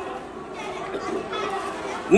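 Faint background chatter of voices over the room noise of a hall, during a pause in a man's talk.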